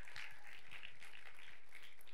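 Faint, scattered clapping from the congregation.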